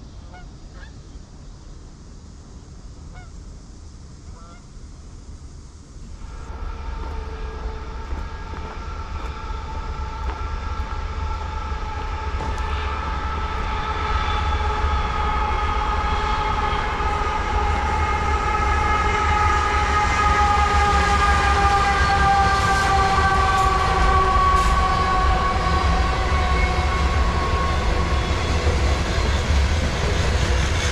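Geese calling faintly for the first few seconds. Then a freight train approaches and passes, its rumble growing steadily louder, with a drawn-out chord of several tones that slowly falls in pitch.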